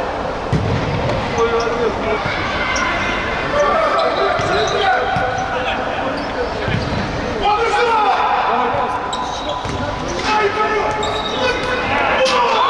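Futsal ball being kicked and bouncing on a hard indoor court, short sharp knocks scattered throughout, with players calling out to each other, all echoing in a large sports hall.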